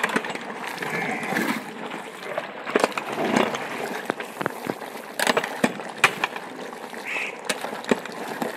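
A metal ladle stirs and scrapes through thick meat curry in a large aluminium pot, knocking against the pot, with sharp clicks scattered throughout and several close together a little after halfway.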